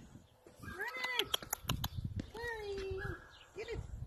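A small puppy whining in a few short pitched cries, with one longer drawn-out cry about two and a half seconds in. A quick run of sharp clicks comes between the cries, around a second and a half in.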